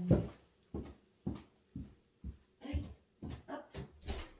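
A dog whimpering and yelping in a string of short cries, about two a second.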